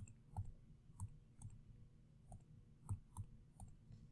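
Faint clicks, about eight at uneven spacing, from numbers being keyed into a calculator emulator on a computer, a few clicks per entered value.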